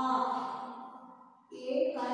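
A voice drawing out a long vowel sound that fades over about a second and a half, then a second drawn-out voiced sound starts near the end.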